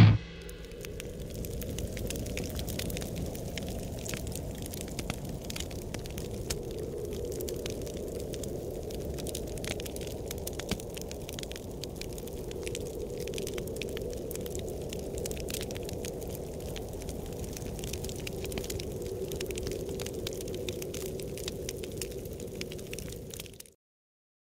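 Large bonfire burning: a steady low rushing of flames with frequent sharp crackles and pops, cutting off suddenly near the end.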